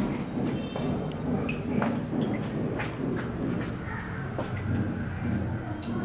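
Footsteps on a hard floor, heard as irregular knocks, with handling noise from a handheld camera over a steady low rumble.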